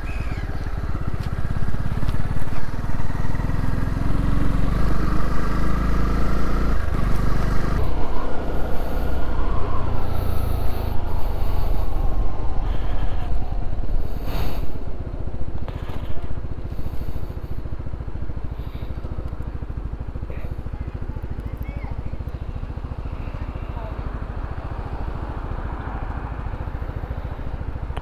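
Honda CB125R's single-cylinder engine running on the move, rising in pitch over the first several seconds and dropping off about eight seconds in. It then settles into a quieter, steadier sound for the last ten seconds or so.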